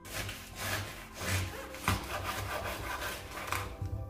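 A large chef's knife sawing through a fresh artichoke on a wooden cutting board to trim off its tough outer leaves: a run of rough, rasping strokes, with a sharper knock of the blade on the wood about two seconds in.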